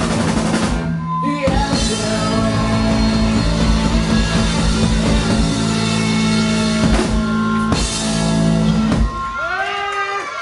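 A live rock band plays loud: electric guitars, bass and a drum kit, with a short break about a second in. The band stops abruptly about nine seconds in.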